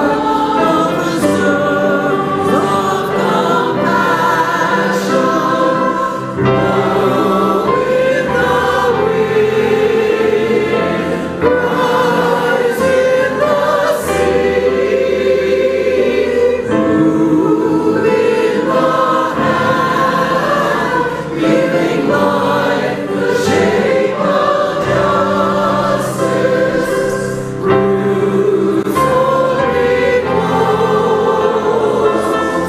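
Church choir singing a hymn, many voices together, with brief breaks between phrases.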